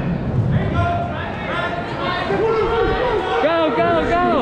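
Spectators and coaches shouting encouragement to a wrestler, several voices overlapping over crowd chatter, with the loudest shouts in the second half.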